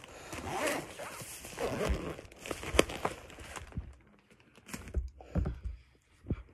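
Repeated rustling and scraping with a few sharp clicks, quietening about four seconds in.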